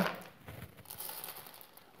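Dried chickpeas being poured by hand into a small plastic-mesh cylinder, a faint scattered rattle of peas dropping onto one another, a few landing on the worktop.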